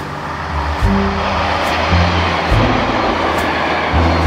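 Background music with a steady beat and held bass notes, with the rushing rumble of a diesel passenger train passing close by underneath it.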